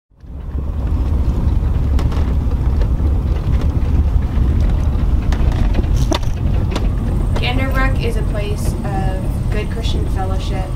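A steady low rumble with a few sharp knocks. From about seven seconds in, people's voices are heard talking, though no words come through.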